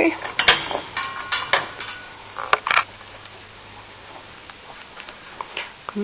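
Child safety gate being opened and passed through: a handful of sharp metallic clicks and rattles from its latch and frame, some with a brief ring, all in the first three seconds.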